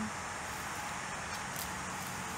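Steady outdoor background noise in woodland: an even hiss with a faint low hum and no distinct events.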